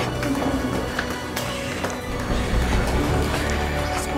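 Dramatic background score: a busy, tense music cue with scattered sharp percussive hits.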